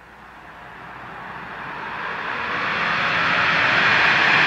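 A steady whooshing noise swell that grows louder throughout, the sound-effect intro of a black metal track before the band comes in.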